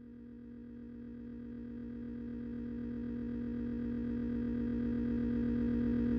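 Electronic drone of a few steady held low tones, fading in from silence and growing gradually louder.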